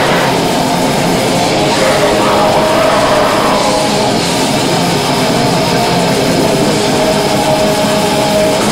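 Black metal band playing live: distorted electric guitars over a drum kit in a dense, unbroken wall of sound. A steady held note comes through from about halfway.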